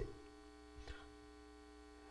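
Near silence with a faint steady electrical mains hum, and a faint brief noise just before a second in.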